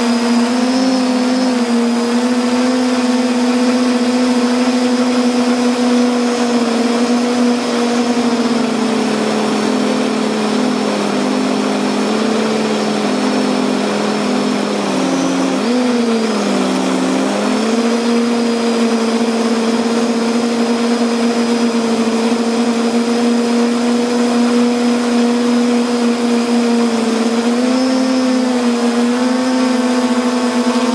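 Octocopter drone's electric motors and propellers humming steadily, picked up by its onboard camera; the pitch dips briefly and recovers about halfway through.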